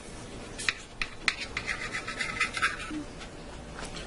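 Carving knife sawing through the crusted, glazed pork roast on a plate: a rasping scrape of quick strokes through the middle, with a few light clicks of knife and fork on the plate.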